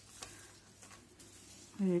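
Faint rustling with a few light ticks as long strands of small faceted glass beads are lifted and handled.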